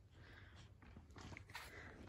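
Near silence: faint outdoor background noise with a low rumble.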